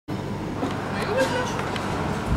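Dining-room ambience: brief indistinct voice sounds over a steady low background rumble, with a few faint light clicks.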